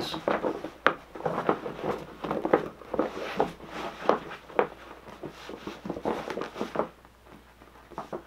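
Clear plastic hat-storage duffel bag being handled and folded, its stiff plastic crinkling and rustling in quick, irregular crackles that thin out near the end.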